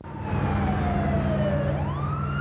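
Police car siren wailing: its pitch falls slowly for most of the stretch, then sweeps back up near the end, over a steady low hum.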